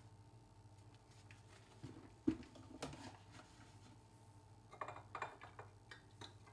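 Faint handling sounds of a paper coffee filter being opened and fitted into a drip coffee maker: soft rustling with a sharp click a little over two seconds in, another just after, and a few small clicks and taps near the end, over a steady low hum.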